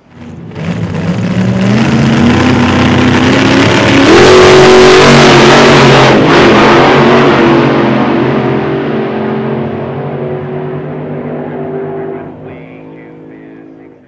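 Car engine revving up in an intro sound effect, its pitch climbing as it builds to a loud peak near the middle, then dropping and fading slowly away.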